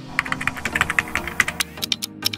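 Computer-keyboard typing sound effect: a quick, uneven run of key clicks over soft background music, marking on-screen text being typed out.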